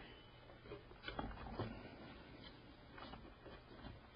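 Faint scattered clicks and rubbing of a plastic heatsink support stand and a circuit board being handled as the stand's corners are pushed down into the motherboard's mounting holes.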